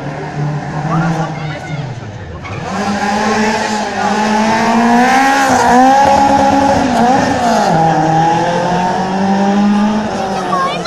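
Rally car engine revving hard as it accelerates toward and past, its pitch climbing, dipping briefly twice midway, then climbing again; loudest around the middle.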